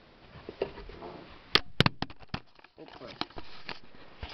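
Handling noise at close range: a few sharp clicks and knocks about one and a half seconds in, then a run of short ticks and taps, as things are moved about beside the pot and the camera is jostled.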